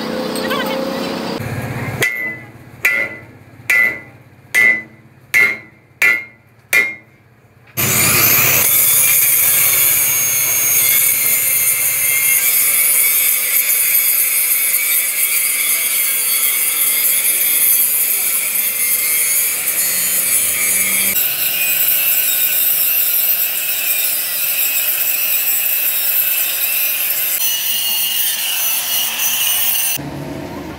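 Hammer blows on a steel trailer axle, about seven ringing strikes in quick succession. Then an angle grinder starts about eight seconds in and runs steadily, grinding down the weld beads on the repaired axle.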